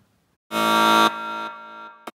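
A harsh, steady buzzer sound effect starts about half a second in, loud at first, then quieter for nearly another second before fading, with a short click at the end.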